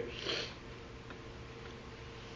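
A short sniff at the start, then quiet room tone with a faint steady hum.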